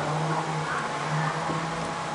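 Steady background hum: a constant low drone over an even wash of noise, with no distinct events.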